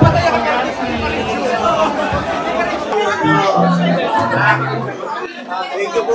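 Several people talking at once in a crowded hall, with background music under the chatter; a few low bass notes stand out about three to five seconds in.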